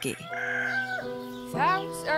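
A rooster crowing once in the first second, over steady background music.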